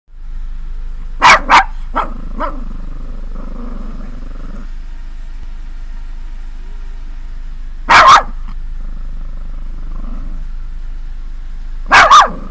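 Small long-haired dog barking at a cat: two sharp barks about a second in, then two softer ones, another pair of barks near eight seconds, and more barking at the very end.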